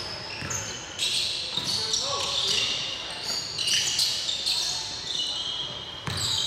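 Basketball being dribbled on a hardwood gym floor while sneakers squeak in many short high-pitched chirps as players cut and stop.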